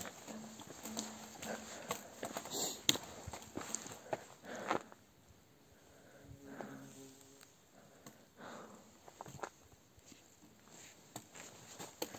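Irregular footsteps on stony ground, a scatter of sharp knocks and scuffs at uneven spacing, the loudest a little under three seconds in and near five seconds in.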